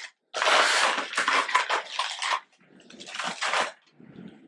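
Plastic packaging of fishing lures (spinnerbaits) crinkling and rustling as it is handled, in two stretches, the second shorter and quieter.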